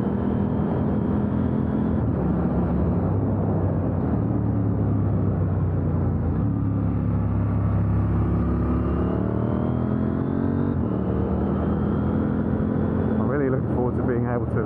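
KTM 890 Duke R's parallel-twin engine through its titanium exhaust, heard from the rider's seat with wind rush. The engine note sinks as the bike slows through a bend, then the revs climb and drop back with an upshift a little after halfway, and it pulls on steadily.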